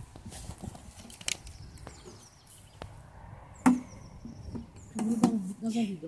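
A few sharp clicks and knocks, the loudest a little before four seconds in, from a plastic water jug and clear plastic tubing being handled.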